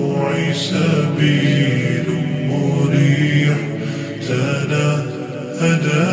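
Arabic nasheed chanted by a solo voice, drawing out long melodic notes without words, over a steady low hum.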